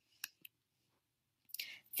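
Near silence with two faint short clicks about a quarter and half a second in, then a soft breath in near the end just before speech begins.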